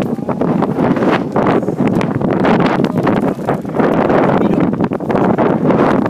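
Wind blowing hard across the phone's microphone: a loud, unbroken rumble with frequent crackles.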